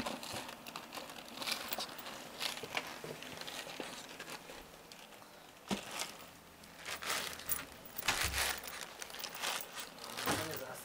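A Shih Tzu digging with his paws inside a fabric storage ottoman, scratching and crinkling a bag in irregular bursts. There is a sharp knock about halfway through and a low thud later on.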